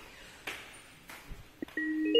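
A few faint scuffs and knocks, then near the end background music starts with clear, ringing mallet-percussion notes like a marimba or glockenspiel.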